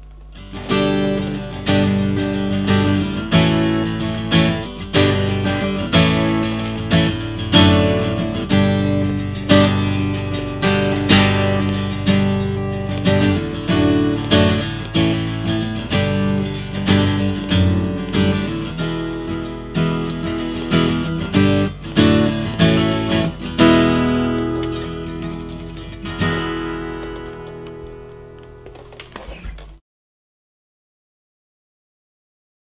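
Gibson Hummingbird spruce-top, mahogany-back dreadnought acoustic guitar strummed in chords with a steady rhythm. Near the end a last chord is left to ring and die away.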